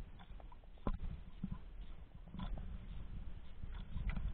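Wind buffeting the microphone in an irregular low rumble, with a sharp click about a second in and a few fainter clicks later as a metal jig lure and its hook are handled.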